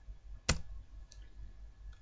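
A single sharp computer-mouse click about half a second in, followed by a few fainter clicks, over a low steady hum.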